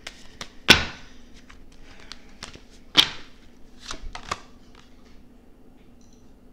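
A deck of tarot cards being shuffled by hand: a run of quick clicks and flutters, with two louder sharp snaps about a second in and about three seconds in. A last cluster of clicks follows, then the deck falls still as a card is drawn.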